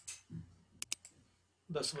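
Sharp computer mouse clicks: one right at the start and a quick pair a little under a second in, as options are picked from drop-down menus.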